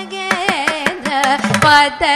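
Carnatic classical music: a woman sings wavering, ornamented notes with violin accompaniment, while a mridangam and a ghatam keep up a run of sharp drum strokes.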